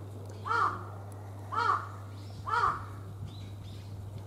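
A crow cawing three times, about a second apart, in a steady series, with a faint steady low hum underneath.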